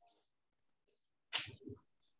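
A brief breathy burst from a person about a second and a half in, followed by a low murmur, during an otherwise quiet pause.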